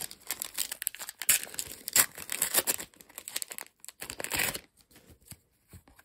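A plastic trading-card pack wrapper being torn open and crinkled by hand, a run of crackling rustles that dies down about four and a half seconds in.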